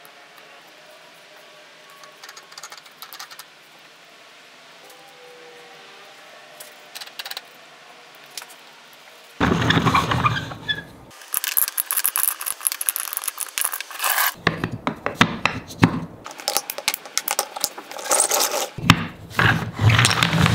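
Faint handling clicks, then, about halfway through, a wooden toy truck and trailer are pushed across a paper-covered table: the plastic wheels roll and scrape in stop-and-start runs, and wooden blocks knock and clatter.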